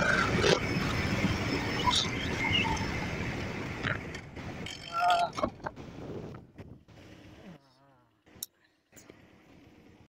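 Wind rushing over the microphone with a Honda CB Shine motorcycle's single-cylinder engine running at speed, dying away over several seconds. Near the end it is nearly quiet apart from a few sharp clicks.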